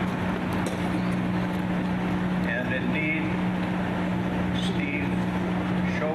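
A man's voice speaking indistinctly through a handheld microphone and outdoor loudspeaker, over a steady low hum and a constant noisy background.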